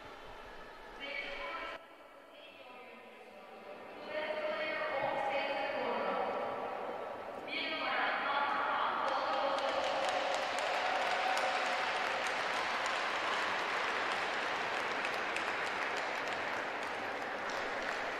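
Small crowd applauding in an ice rink, the clapping rising about eight seconds in and holding steady after that. Before it, a few seconds of steady sustained tones.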